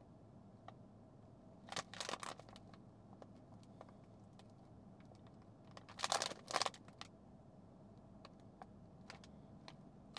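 Two short bursts of light clicking, one about two seconds in and one about six seconds in, over a faint steady room hum.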